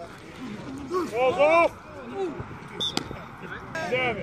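Flag football players shouting during a play: several short, high-pitched calls, the loudest about a second in, with a single sharp click about three seconds in.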